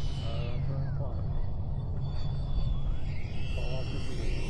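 Wind rumbling on the microphone under the whine of a 90mm electric ducted-fan RC jet on final approach. The fan's whistle glides down about half a second in as the throttle is cut, then rises again a little after three seconds as power is added to hold the approach in the gusts.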